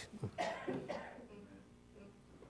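A brief cough-like sound from a person, two quick bursts just after the start, trailing off into quiet room tone.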